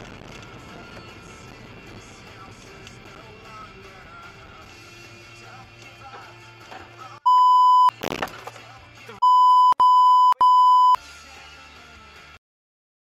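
Loud one-pitch censor bleeps: one about seven seconds in, a short loud burst of noise, then three more bleeps in quick succession. They are the kind laid over a driver's swearing in dashcam footage. Before them, only a faint steady low hum.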